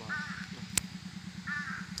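Two short cawing bird calls, one just after the start and one near the end, with a single sharp click about midway and a low steady hum underneath.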